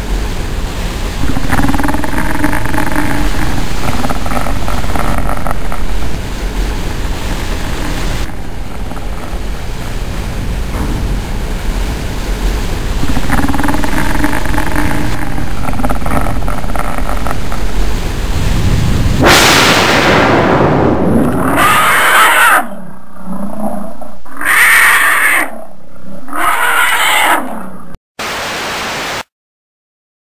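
Horror-film sound effects: two long, growling, creature-like roars over a steady noisy rumble, then a rising rush of noise and three loud cries about a second apart, and near the end short bursts of static hiss.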